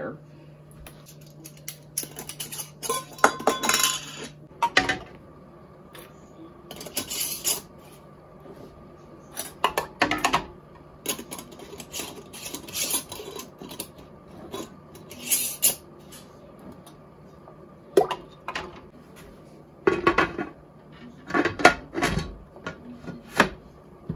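Glass canning jars clinking and knocking against one another and the aluminum pressure canner as they are set in, in scattered bursts, then the canner's metal lid being put on near the end.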